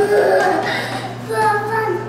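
A young child's voice in sing-song vocalizing without words, with a few held notes, over a steady low hum.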